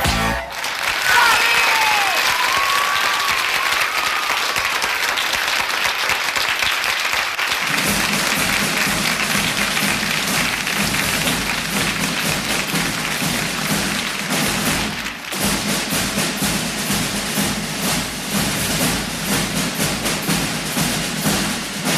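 The band's song ends with a final hit. A studio audience then applauds and cheers, with a few high cries riding over it early on. About eight seconds in, music starts up again under the continuing applause.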